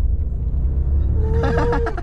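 Low, steady engine and road rumble inside the cabin of a Mercedes-Maybach S580 as it is driven hard to show its power, with a faint rising note in the first second. A passenger lets out a drawn-out exclamation near the end.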